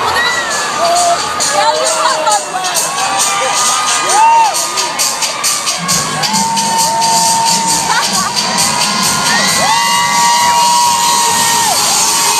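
Street crowd cheering and screaming, with several long, high shrill whoops held above the noise. From about halfway through, music with a low beat joins in under the cheering.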